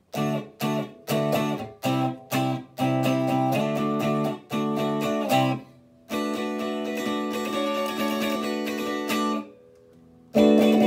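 Fender Vintera '60s Telecaster Modified electric guitar played with both pickups in series and the S-1 switch engaged: about ten short chord stabs, then a few seconds of continuous ringing strummed chords that stop shortly before the end.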